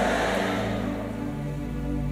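Soft live background music from a keyboard and bass guitar: sustained, steady chords. The reverberation of the preacher's amplified voice fades out at the start.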